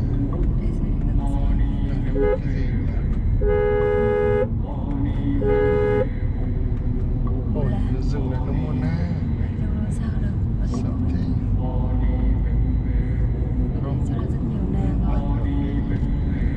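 Car horn sounding twice, a blast of about a second and then a shorter toot, over the steady rumble of road and engine noise inside a moving car.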